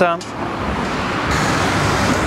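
Road traffic: a passing car's steady rushing tyre and engine noise, rising a little after the first half-second and then holding.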